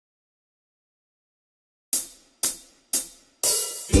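Silence for about two seconds, then a hi-hat count-in: three short ticks about half a second apart, then a longer open hi-hat hit near the end, setting the tempo before the song starts.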